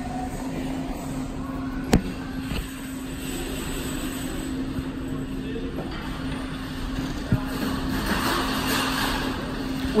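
Minute Key self-service key-cutting machine at work duplicating a key: a steady motor hum with a sharp click about two seconds in and another around seven seconds, and a hissier sound swelling over the last couple of seconds.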